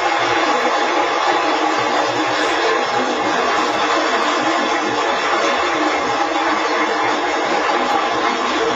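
A crowd applauding and cheering on an archival speech recording, a steady unbroken wash of sound.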